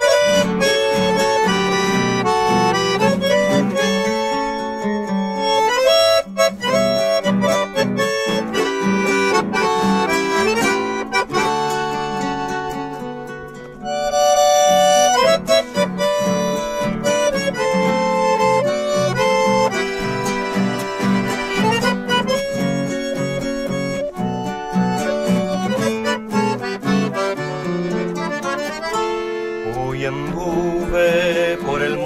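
Piermaria button accordion playing a lively melody over strummed and plucked acoustic guitar accompaniment, an instrumental introduction before the singing comes in. The music dips briefly about 13 seconds in, then comes back louder.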